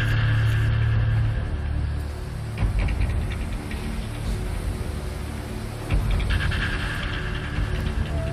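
Tense background music: a low, steady bass drone with a few sharp percussive hits.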